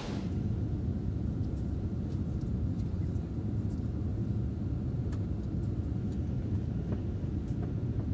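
Steady low rumble of a passenger aircraft in flight, its engines and airflow heard from inside the cabin, with a few faint ticks.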